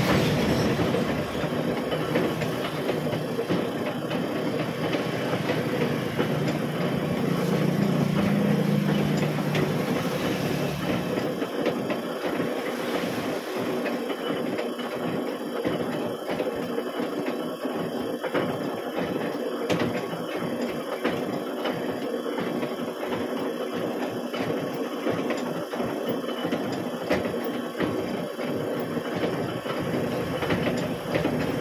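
Metal-working machine, likely a shaper, running as its tool bar strokes a cutter in and out of the bore of a workpiece on a dividing head, cutting the teeth of an internal gear. There is a continuous mechanical clatter with a steady low hum for the first ten seconds or so, which then turns into a rhythmic knocking.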